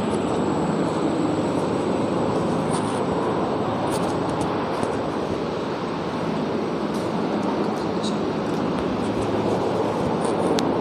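Steady background noise, even and unbroken, with a faint thin high whine and a few faint clicks.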